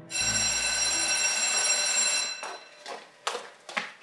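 Electric doorbell ringing once, a steady ring lasting about two seconds, followed by a few short clicks and knocks.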